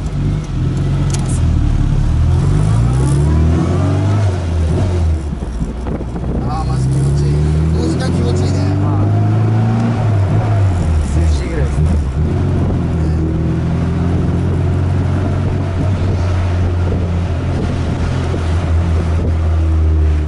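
Rover Mini's A-series four-cylinder engine heard from inside the cabin while accelerating through the gears. Its pitch climbs, drops at a gear change, climbs again, then settles into a steady cruise for the second half.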